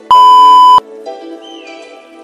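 A single loud electronic interval-timer beep, one steady high tone lasting under a second, marking the end of a 30-second exercise and the start of the break.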